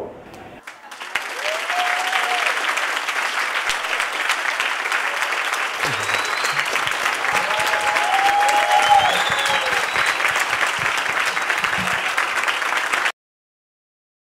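Large audience applauding, with a few voices cheering over the clapping; it builds up about a second in and cuts off suddenly near the end.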